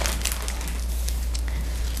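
Light crinkling and a few small clicks of plastic-sleeved sticker packets being handled, over a steady low electrical hum.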